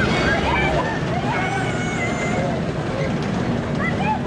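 Crowd voices and chatter around a WWII Ford GPA amphibious jeep, whose engine runs underneath with a low steady rumble as it moves slowly past.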